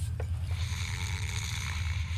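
A steady hiss that starts about half a second in and holds, over a low background hum.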